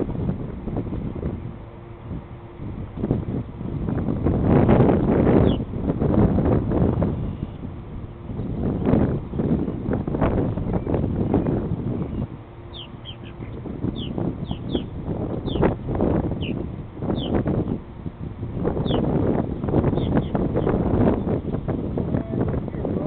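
Wind buffeting the microphone in gusts. From about halfway on, a dozen or so short, high, downward chirps from purple martins flying around their colony.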